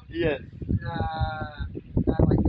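A person's voice, speaking and then holding one long drawn-out vowel for about a second that falls slightly in pitch, in the middle.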